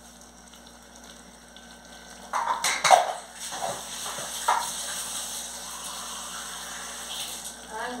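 Tomato sauce sizzling in an aluminium pot on the stove: a steady high hiss that sets in about three seconds in, just after a few short, sharp sounds.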